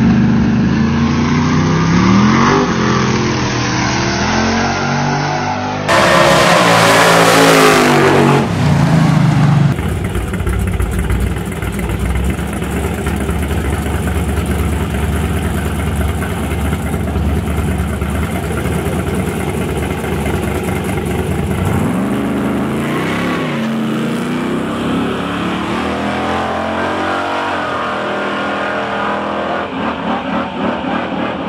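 Drag-racing cars' engines revving and accelerating hard down the strip, their pitch rising and falling through the gears, in several clips cut together. The loudest stretch runs from about six to ten seconds in.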